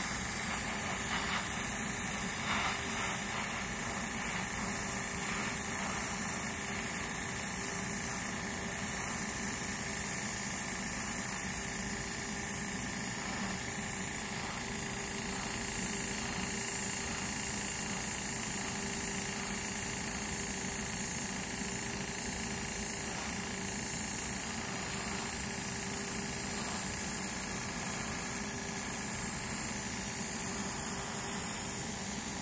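Airbrush spraying grey surfacer onto a plastic model part: a steady hiss of air, with the steady hum of the air compressor underneath.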